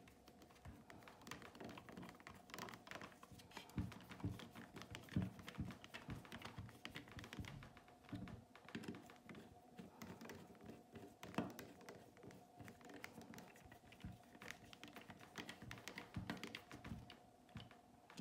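Faint, irregular clicks and small taps of a screwdriver turning Torx screws into the electrical box of a circulator pump, with a few slightly louder ticks scattered throughout.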